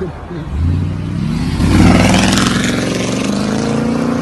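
Car engine revving up as the car accelerates, heard from inside the cabin: its pitch climbs over the first two seconds or so, then holds high.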